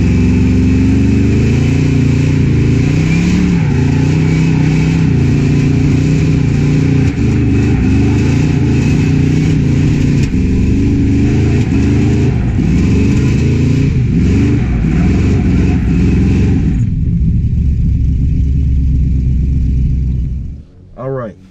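Supercharged Oldsmobile Cutlass engine held at high revs during donuts, its pitch wavering up and down, over a steady hiss of tyre noise. Near the end the hiss drops away and only a lower engine sound remains.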